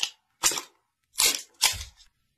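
A smartphone and its cardboard box being handled as the phone is lifted out: four short, sharp clicks and scrapes, about half a second apart.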